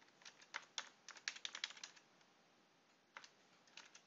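Computer keyboard typing, faint: a quick run of keystrokes for about two seconds, a pause, then a single keystroke near the end.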